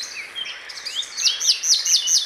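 Birdsong: small birds chirping, with a quick run of high, downward-sweeping notes starting a little under a second in.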